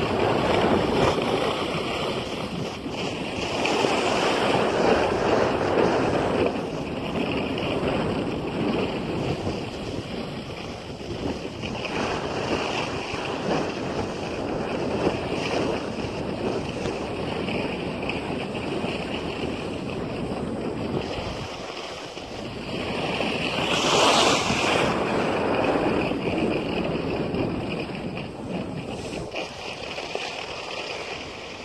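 Skis sliding and scraping over packed snow, with wind rushing across the microphone during the descent. The hiss swells and eases, loudest about four seconds in and again near twenty-four seconds.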